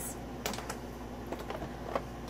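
Light clicks and taps of plastic makeup packaging being picked up and sorted by hand, over the steady hum of a room air conditioner.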